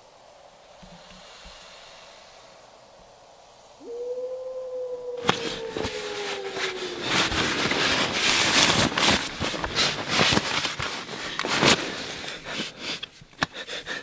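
A single long hooting call about four seconds in, jumping up to its note and then sliding slowly down in pitch over about three seconds. It is followed by loud, dense rustling and crackling that builds up and breaks into separate crackles near the end.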